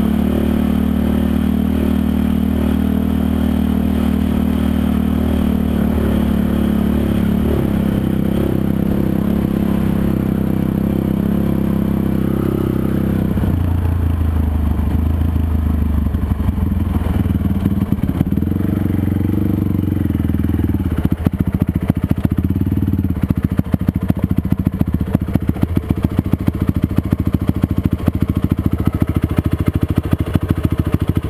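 Honda TRX450R quad's single-cylinder four-stroke engine running at a steady speed, dropping to low revs about halfway through, then idling with an even pulsing beat in the last third.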